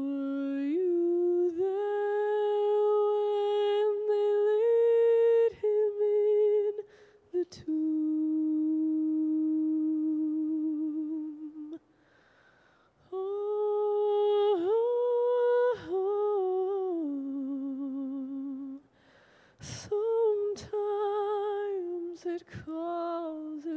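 A solo woman's voice sings a slow unaccompanied melody in long held notes with vibrato. The phrases are separated by short pauses, and a few sharp clicks fall in the second half.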